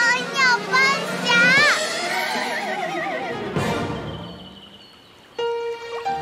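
A cartoon little girl's voice sings a bouncy sing-song phrase in short bending notes, then holds one long warbling note. About three and a half seconds in there is a short whoosh, and gentle music starts near the end.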